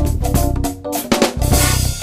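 Recorded drum break in soundtrack music: fast snare and bass drum strokes over a heavy low end, ending in a bright sustained wash in the last half second.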